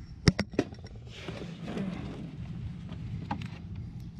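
Three sharp clicks in quick succession in the first second, then rustling handling noise and one more click near the end: the wire leads with copper ring terminals being handled as they are connected to the spa heater's terminals.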